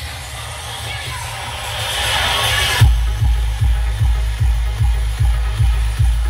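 Electronic dance music played very loud through a large outdoor DJ speaker stack. The bass kick drops out while a rising noise sweep builds for nearly three seconds, then the heavy kick drum comes back in at about two and a half beats a second.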